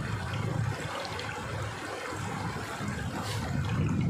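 Shallow river running over stones: a steady rush of flowing water.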